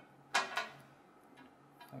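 A single sharp click of small plastic parts knocking together as the earphone cable and plugs are handled, with a short ringing tail; a fainter tick follows near the end.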